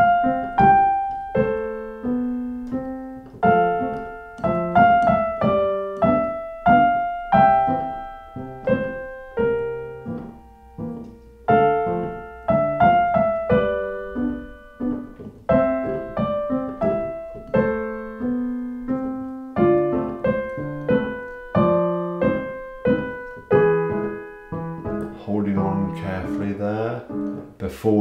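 Piano played with both hands in a smooth, lyrical passage: a melody over a left-hand accompaniment, notes struck one after another at a steady moderate pace, each ringing and fading.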